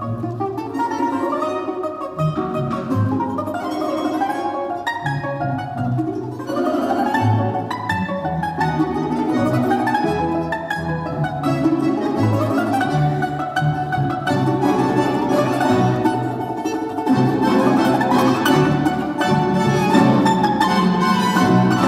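Domra solo playing a plucked melody with climbing runs, accompanied by a Russian folk-instrument orchestra of plucked strings with a bass line. The ensemble grows fuller and louder in the last few seconds.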